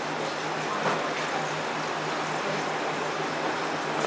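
Steady background hiss with a faint low hum from the running equipment around a reef aquarium.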